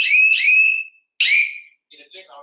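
Electronic emergency alert alarm beeping, a train of short beeps each rising slightly in pitch at about three a second, signalling that a patient has called for help. The beeping stops about a second in, and one more beep sounds after a short gap.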